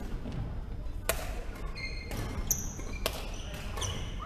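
Badminton rally: rackets strike the shuttlecock three times, about a second apart, with short high squeaks of shoes on the wooden court floor between the hits.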